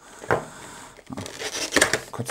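Handling noises from a cardboard webcam box being turned and opened on a tabletop: a few short knocks and scrapes of cardboard under the hands.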